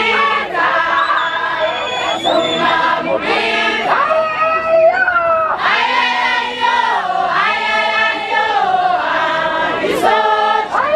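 A crowd of marchers singing together in chorus, many voices holding and sliding between notes in phrases a second or two long.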